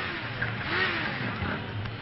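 Motorcycle engines revving as bikes ride fast past, the sound swelling to a peak a little under a second in.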